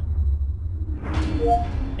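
A steady low rumble throughout, with a brief swell about a second in carrying a rising two-note electronic chime: Windows 10 Cortana's listening tone, answering the wake word.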